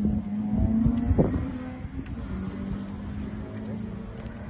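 Rally car engine running hard out of sight, one steady note that sags slightly in pitch and fades after about a second and a half as the car moves away.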